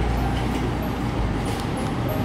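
Steady low rumbling background noise with a hiss above it and a couple of faint light ticks.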